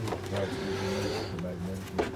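Low, indistinct voices over a steady low hum, with a single click at the very end.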